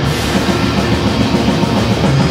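Heavy metal band playing live, loud and dense: distorted electric guitar over a drum kit with cymbals.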